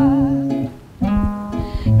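Acoustic guitar accompanying a woman's singing. Her held note, with a wavering vibrato, ends about half a second in, and the guitar carries on alone between sung lines.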